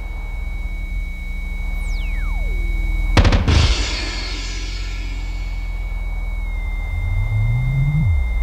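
Experimental drone/noise music: a steady high electronic tone over a low drone. About two seconds in, a tone sweeps down from very high to low, followed by a sudden loud burst. Near the end, a low tone slides upward.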